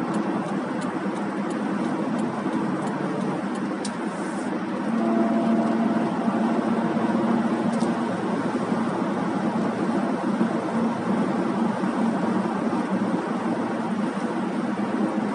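Steady road noise of a car driving at highway speed, heard from inside the cabin: a continuous tyre rush with a low drone that grows a little louder about five seconds in. A few faint ticks sound in the first few seconds.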